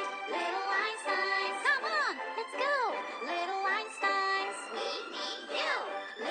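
Children's cartoon theme music with a synthetic-sounding sung melody whose notes swoop up and down, sounding tinny and without bass, as if played from a device speaker.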